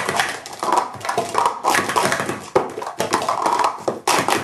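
Plastic sport-stacking cups clattering in quick succession as they are stacked up and down on a mat at speed, a dense, unbroken run of rapid clicks and taps.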